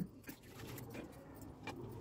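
Faint background room tone: a steady low hum under a light hiss, with no distinct event.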